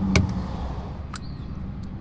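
A few sharp plastic clicks of a GoPro camera and its battery being handled as the battery, its pull tab torn off, is pried out. A low steady hum runs underneath.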